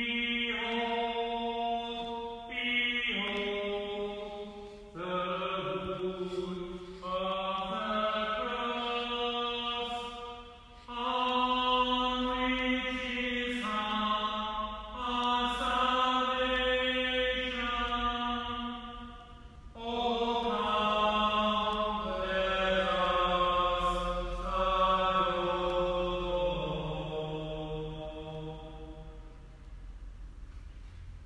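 A single unaccompanied voice chanting liturgical phrases, holding long notes with short breaks between phrases; the last phrase fades away near the end.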